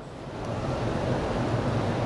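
Steady rushing room noise with a low hum, growing louder about half a second in.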